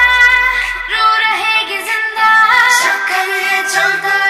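A female voice sings a Hindi Shiv bhajan, a devotional song, over instrumental backing. A deep bass note dies away in the first second.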